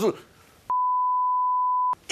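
A steady, pure beep tone about a second long, starting under a second in, with all other sound cut out around it: a broadcast censor bleep blanking out a stretch of speech.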